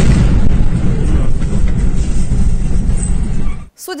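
Large explosion picked up by a car's dashcam: a very loud, heavy rumble that carries on for over three seconds after the blast and cuts off abruptly near the end.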